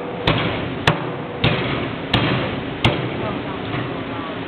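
Heavy Chinese cleaver chopping through pork spare ribs on a plastic cutting board: five sharp chops, about two-thirds of a second apart, stopping a little after the middle.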